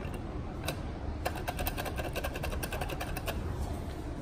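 Elevator car with a steady low hum. A single click comes early, then a fast run of mechanical clicks, about ten a second, lasts for about two seconds starting a little over a second in.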